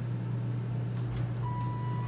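Steady hum of an elevator cab's ventilation fan, which runs loud in this car. About a second in come a couple of clicks, then a steady electronic beep as the doors begin to slide open.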